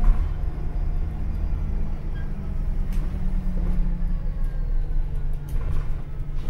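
Cabin noise of an Alexander Dennis Enviro400H hybrid double-decker bus on the move: a steady low rumble and drone of the drivetrain and road, its low tone dropping slightly about four seconds in, with a few faint rattles from the interior.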